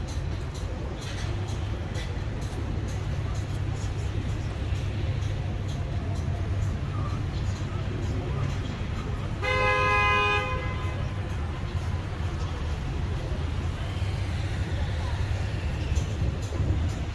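A car horn gives one long honk of about a second, a little past the middle, over a steady low rumble of street traffic.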